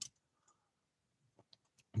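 A pause with a few faint clicks: one sharp click right at the start, then near silence with a few small ticks near the end.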